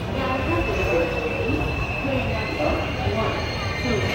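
Passenger coaches of the Puri–Jodhpur Superfast Express rolling slowly along a platform: a continuous low rumble with a steady high-pitched squeal from the wheels, and indistinct voices from the platform behind it.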